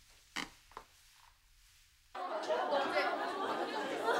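A brief hush with two short soft sounds, then, about two seconds in, the sudden start of a classroom full of schoolgirls chattering at once.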